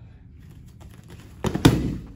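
A person thrown by a leg sweep landing on his back on the foam mats: two thuds close together about a second and a half in, the second one the loudest.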